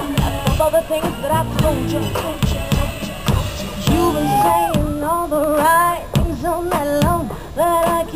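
Live pop music: female group vocals sung into microphones over a backing track with a steady drum beat, played through the stage PA.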